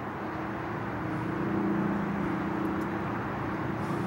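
Steady low mechanical hum over a rumbling background, growing a little louder after the first second.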